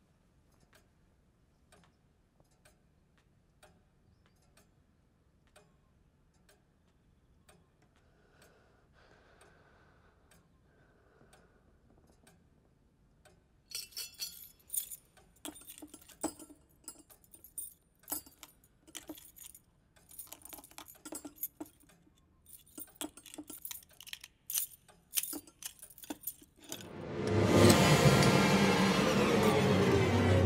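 Faint, evenly spaced ticking in the first half. From about halfway, a bunch of metal keys jangles and clinks in repeated bursts as it is handled and dropped into a bowl. Near the end, a loud sound swells up sharply.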